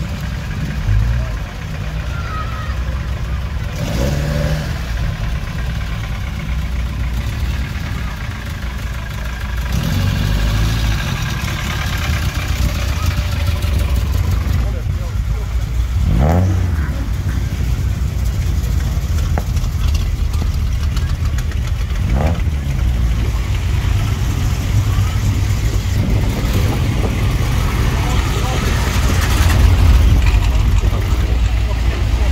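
Classic car engines rumbling amid crowd voices, with two short rising revs partway through. Near the end a car drives up close and its engine is the loudest sound.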